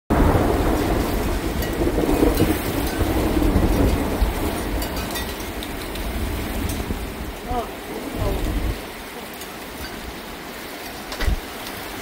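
Heavy rain in a severe thunderstorm with gusting wind: a loud low rumble under the rain for the first eight seconds or so, then steadier, quieter rain.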